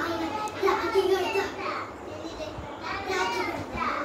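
Young children's voices, talking and playing.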